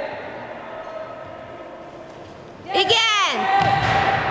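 Children's voices echoing in a large sports hall, with a sudden burst of loud, high-pitched shouting about three quarters of the way in.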